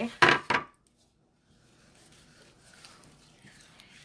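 Hands handling an adhesive silk-screen stencil against a rough wooden board. There is a short, loud rustle and knocking in the first half second, then only faint handling sounds.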